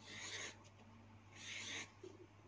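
Felt-tip marker rubbing on paper as small circles are drawn: two faint, scratchy strokes of about half a second each, one at the start and one about a second and a half in.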